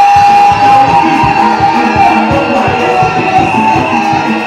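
Live church band music led by guitar over a steady drum beat, with a long held high note in the first second or so.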